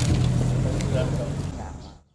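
Location sound: people talking faintly over a steady low hum, with a few small clicks, fading out near the end.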